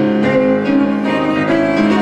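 Violin and grand piano playing an instrumental passage together, the violin holding long bowed notes over the piano.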